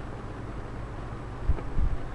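Steady whooshing of an electric room fan and computer cooling fans. A couple of low thumps come near the end.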